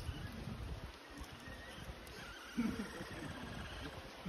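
Capybara call that sounds like an electronic ray gun, a pitched, wavering call loudest from about two and a half seconds in.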